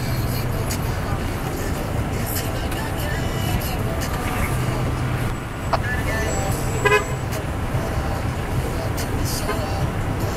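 Steady low hum of idling vehicle engines with distant voices, and a brief vehicle horn toot about seven seconds in.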